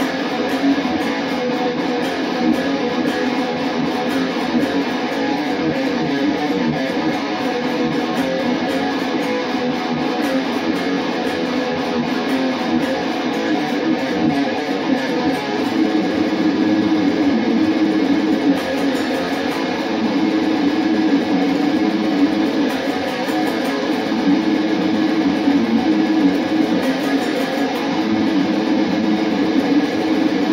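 Jackson Rhoads electric guitar played through an amp, a fast shredding metal riff with no pauses, getting a little louder about halfway through.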